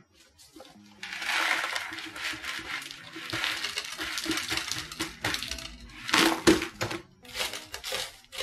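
Granular PON mineral substrate pouring and rattling out of a clear plastic container into a pot, with a louder clatter about six seconds in.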